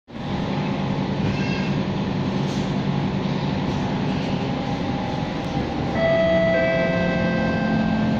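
Interior of an MRT train pulling out of a station: a steady rumble and hum of the running train. About six seconds in it grows louder and a set of steady whining tones from the electric traction motors sets in and holds.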